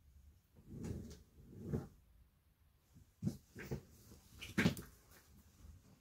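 Soft rustling and bumping of a bulky knitted bag being handled and turned close to the microphone, a few brief muffled knocks spread through, the strongest about four and a half seconds in.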